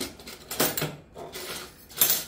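A spoon clinking and scraping against a pot and a sugar container as sugar is spooned in by the spoonful, with several sharp clinks spread over two seconds.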